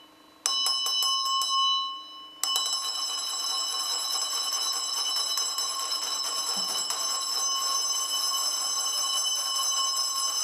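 Small brass hand bell rung by hand, its clapper striking again and again so that a bright, many-toned ringing builds up. A first peal about half a second in fades away. From about two and a half seconds the ringing is started afresh and kept going steadily.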